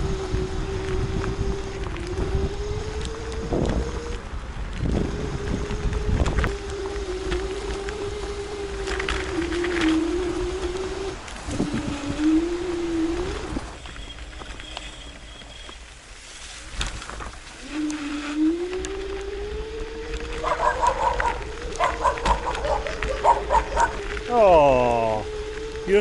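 Kaabo Mantis dual-motor electric scooter whining as it rides a rough forest track. The whine rises and falls with speed, drops away for a few seconds about halfway and climbs back up, with knocks from bumps in the broken surface.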